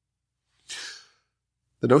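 A man's short intake of breath, then he starts speaking near the end; silent before the breath.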